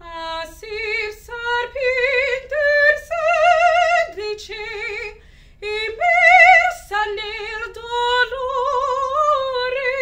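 A woman singing a classical Italian song unaccompanied, in operatic style, with a wide, even vibrato on sustained high notes and short breaths between phrases.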